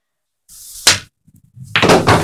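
A single sharp click of a pool cue striking a billiard ball about a second in. Near the end comes a louder, longer noisy burst as the balls run and collide.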